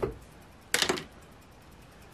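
A brief clicky, scratchy rattle of about a quarter second, roughly three-quarters of a second in, from hands handling a marker pen and a plastic scratch-off tool on a wooden table.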